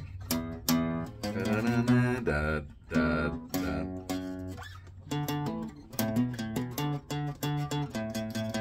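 Acoustic guitar being played: ringing notes for the first few seconds, then the same chord strummed over and over in an even rhythm from about five seconds in.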